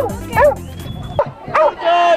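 Beagles barking: several short, sharp barks in quick succession, with a longer held call starting near the end.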